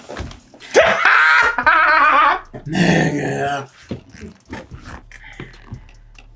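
Two men laughing loudly and wildly in two long bursts, the first about a second in and the second just before the middle, trailing off into quieter chuckles.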